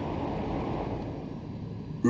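Steady low background noise with no distinct events, fading slightly toward the end.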